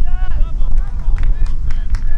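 Young players' voices shouting on a football pitch over a heavy low rumble of wind on the microphone, with a few sharp knocks in the second half.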